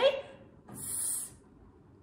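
A woman's voice holding the phonics sound 's' as one sustained hiss of about half a second, sounding out the first letter of the word 'seek'.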